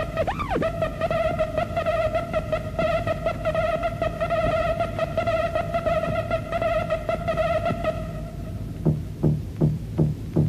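Breakdown in an electronic dance music DJ mix: one held synthesizer note with a slight waver, swooping down and back up near the start, over a low rumble. The note stops about eight seconds in and a fast, steady kick drum beat comes back in.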